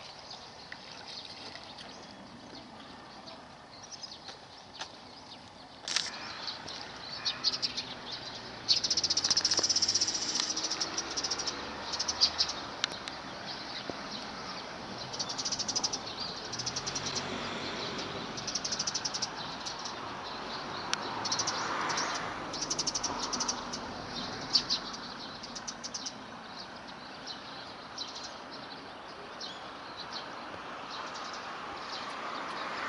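Small wild birds chirping and calling over and over, high-pitched, over a steady outdoor background; the calls are loudest about nine to eleven seconds in.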